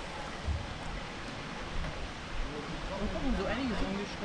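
Indistinct voices of people talking, with a few words rising clearer near the end, over a steady rushing outdoor background noise.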